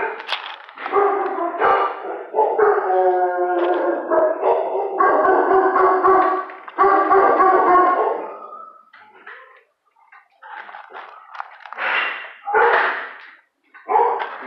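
Dogs howling in long, held notes for several seconds, followed by a few shorter, rougher calls or barks near the end.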